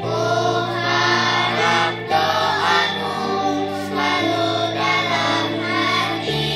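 A group of children singing a song together in chorus, over steady low backing chords that change about every two seconds.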